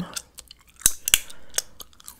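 Gum being chewed close to a microphone: a string of sharp, wet mouth clicks and smacks, the two loudest about a second in.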